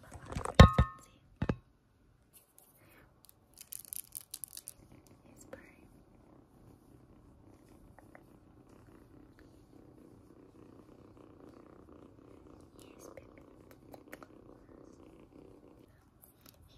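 Kitten purring, a steady low rumble that sets in about six seconds in and carries on to the end. A couple of loud knocks open it, and there is a brief rustle about four seconds in.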